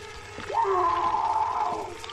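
A held, slightly wavering tone of several pitches from a horror film's soundtrack, starting about half a second in and fading near the end.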